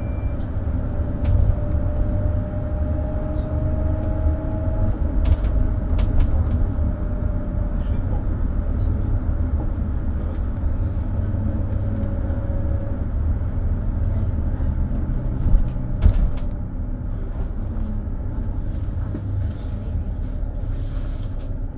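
Mercedes-Benz Sprinter City 45 minibus driving, with a steady low engine and road rumble. Scattered rattles and knocks come from the body over bumps, the strongest well after halfway, and a faint whine rises slightly a few seconds in.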